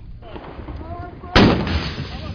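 A single loud weapon shot about one and a half seconds in: a sharp crack followed by a rumbling, echoing tail.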